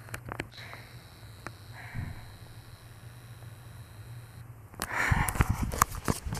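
Soft breathing close to a phone's microphone over a low steady hum, with a few small clicks. About five seconds in come loud rustling and knocks as the phone is handled and swung around.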